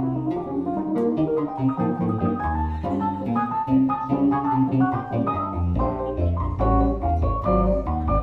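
Live keyboard duo playing jazz: organ-sounding chords on a stage keyboard over a line of low bass notes, with quick note changes throughout.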